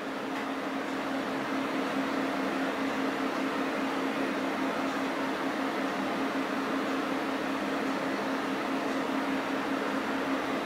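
Steady hum of computer cooling fans, a constant low tone over an even whoosh, getting a little louder over the first couple of seconds as the mining rig's three graphics cards begin working.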